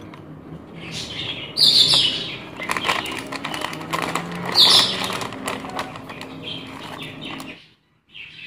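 Thin plastic bag crinkling and rustling in the hands as it is opened, in irregular crackles with two louder bursts.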